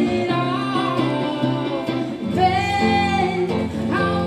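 Live song: a woman sings over an electric guitar, holding one long note about halfway through.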